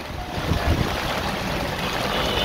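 Heavy rain and tyres hissing on the wet road, heard from inside an open-sided three-wheeler rickshaw as it drives along, with a low rumble that grows a little louder about half a second in.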